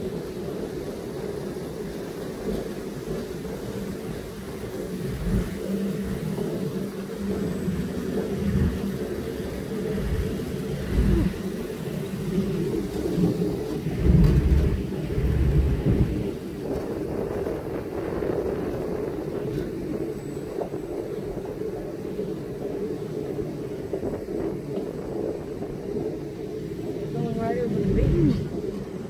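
Amusement ride car running along its elevated track: a steady mechanical rumble, with heavier low rumbles now and then, loudest about halfway through.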